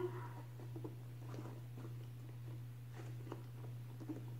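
Faint rubbing and small creaks of a rubber gas mask being shifted and adjusted on the face by hand, a few brief scattered ticks, over a steady low hum.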